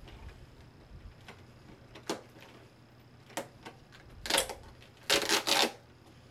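Fingers picking and prying at a small door of a cosmetics advent calendar: a few scattered clicks and scratches, then two louder bursts of scraping and crinkling packaging in the second half, the later one the loudest. The door is hard to get open.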